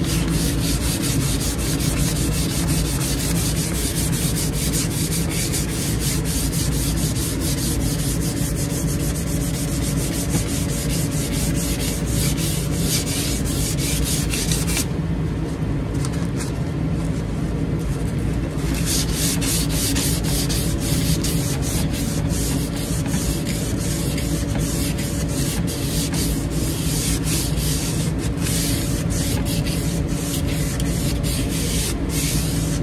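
Fine-grit sandpaper rubbed by hand back and forth along a wooden shovel handle: rapid, continuous rasping strokes, pausing for about three seconds around the middle.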